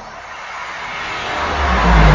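Logo-reveal sound effect: a rising whoosh that swells steadily in loudness, with a deep rumble building under it near the end.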